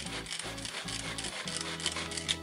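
Tupperware Power Chef pull-cord chopper being pulled again and again: the cord zips out and back in quick strokes while the blades spin through tomatoes chopping salsa.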